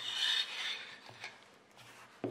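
Clear plastic mounting brackets slid by hand across a desk mat, a rubbing scrape that is loudest in the first second and then fades to a few faint clicks.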